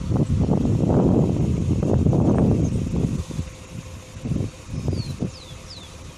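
Wind rumbling on the microphone for about the first three seconds, then dropping away. Near the end a bird gives three short, high, descending chirps.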